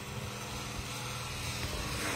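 A steady low mechanical hum under an even hiss, like a machine or fan running.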